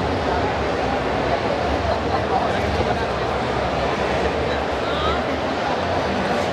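Audience chatter in a large hall: many voices talking over each other in a steady, unbroken murmur.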